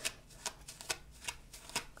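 A comb being pulled through dry, densely tangled hair in a run of short, faint strokes, a few a second; the hair is hard to comb through.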